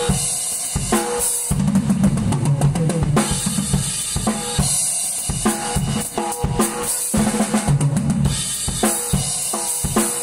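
Acoustic drum kit played at a fast, busy pace: bass drum, snare and toms struck in quick succession with cymbals ringing over them.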